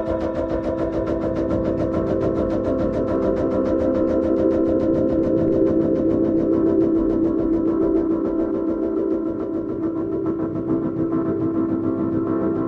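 Ambient electronic music: held synthesizer chords droning under a fast, even pulsing rhythm.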